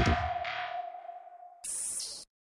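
Electronic music: a steady synthesizer tone over a throbbing low pulse that fades away, then a short burst of high hiss near the end.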